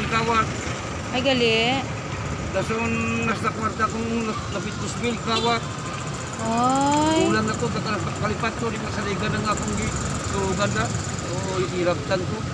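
Homemade string instrument sounding short, wavering pitched notes and rising slides, some notes held for about a second, in scattered phrases over a steady wash of street traffic.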